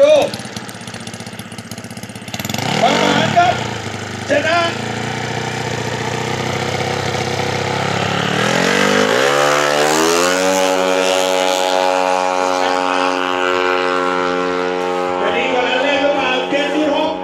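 Small drag-racing underbone motorcycle engine, a horizontal-cylinder racing engine, idling at the start line, then revved up over about two seconds, about nine seconds in, and held steadily at high revs.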